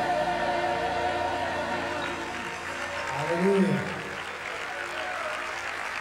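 A choir's and band's held closing chord dies away in the first second. It gives way to a congregation applauding and calling out praise. About three and a half seconds in, one voice calls out a long rising-and-falling shout over the crowd.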